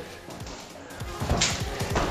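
Background electronic music: quiet for the first second, then louder from about a second in, with a fast, steady beat.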